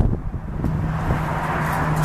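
A sharp knock as a fold-out saddle rack is swung out from the aluminium trailer wall, with light handling clatter after it. From under a second in, a steady low hum sets in, with wind on the microphone.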